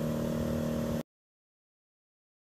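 A steady engine-like hum from running machinery that cuts off abruptly about a second in, followed by dead silence.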